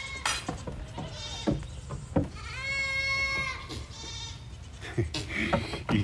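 Young goat bleating once, a single steady high call lasting about a second, with a few short light knocks before and after it.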